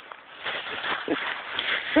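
Dry fallen leaves rustling and crunching as a puppy bounds through a leaf pile, with a couple of brief faint voice-like sounds in between.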